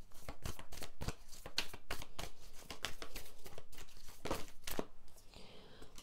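A tarot deck shuffled by hand: a fast, irregular run of papery clicks and snaps from the cards.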